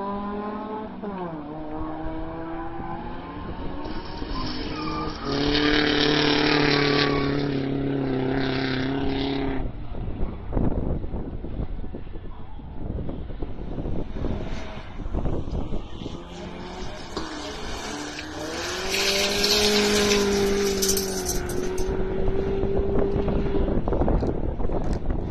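BMW Cup race cars on a dirt and gravel track, engines revving hard with pitch falling and rising through gear changes. It is loudest twice, about five to ten seconds in and again near the end, as cars pass at full throttle, with rough gravel and tyre noise between.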